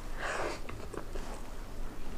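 Mouth sounds of eating moist tiramisu cake off a fork: a soft breathy noise near the start, then quiet wet chewing with a few small clicks.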